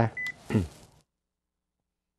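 A single short, high telephone beep, about a fifth of a second long, on the call-in line as the caller's call ends, over a man's brief spoken 'ừ'.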